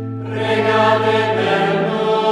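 Choir chanting a sung litany in Italian: voices holding long notes over a low steady tone. The singing swells fuller and louder just after the start, and the low tone drops away near the end.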